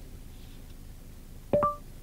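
Android Auto's voice-command start tone through a Ford SYNC 3 system: a short two-note rising chime about one and a half seconds in, the sign that Google voice control is now listening.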